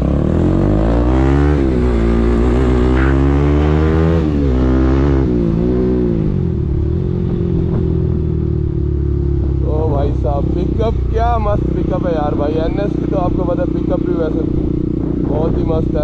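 Bajaj Pulsar 200NS single-cylinder engine breathing through an Akrapovic-style aftermarket exhaust with its muffler taken out, which makes it very loud. It pulls away and accelerates in three rising pulls, the pitch dropping at each gear change, then settles into a steady drone while cruising.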